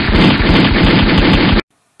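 Automatic gunfire sound effect: a loud, rapid, continuous rattle of shots that cuts off abruptly about one and a half seconds in.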